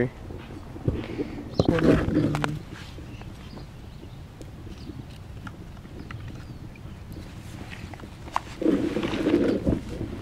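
Outdoor lakeside ambience: a steady low background with scattered faint clicks, broken by two louder vocal sounds, one about two seconds in and one near the end.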